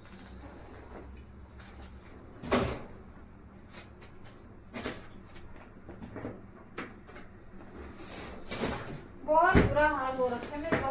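Scattered knocks, clacks and rustles of things being packed into an open steel trunk, the loudest knock about two and a half seconds in. A high-pitched voice is heard near the end.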